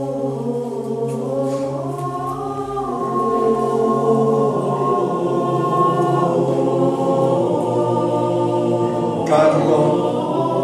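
A choir singing slow, sustained chords, growing a little louder about three seconds in.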